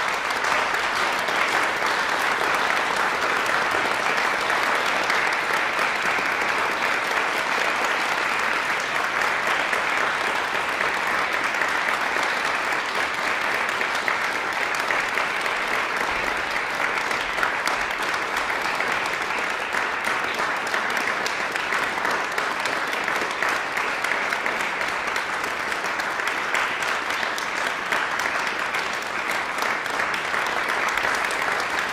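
A small audience applauding steadily: the closing applause at the end of a solo piano recital, with no let-up while the pianist bows and leaves the stage.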